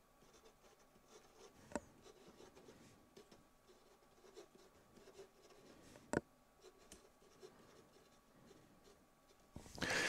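Pen writing on a paper pad: faint, scratchy strokes, with two sharper ticks about two and six seconds in.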